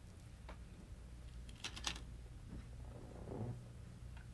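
Faint, sparse clicks of go stones: a few sharp clacks, two of them close together near the middle, as a player handles stones and reaches to place one on the board. A low steady hum sits beneath.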